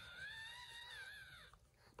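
A faint, high-pitched whine from a newborn French bulldog puppy: one thin, slightly arching cry lasting about a second, then quiet.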